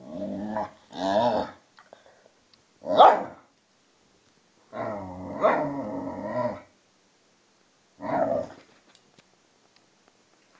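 A Hungarian vizsla and a German shorthaired pointer growling at each other in play fighting, in five separate bouts. The loudest is a short bark about three seconds in, and the longest is a growl of about two seconds near the middle.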